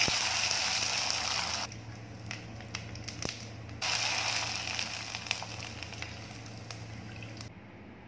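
Sago (tapioca) papads deep-frying in hot oil: loud sizzling with scattered crackles. The sizzling dies down about two seconds in, starts again about four seconds in, and stops suddenly near the end.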